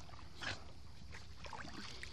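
Shallow sea water splashing and lapping at the shore in irregular small splashes, with one louder splash about half a second in, over a steady low hum.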